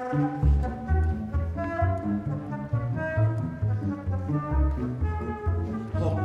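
Live instrumental ensemble music: a busy line of short low bass notes, entering about half a second in, under a melody in the middle register.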